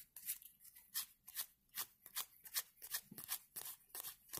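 Faint, irregular clicks as Panini Adrenalyn XL trading cards are flicked through one by one, about two or three a second.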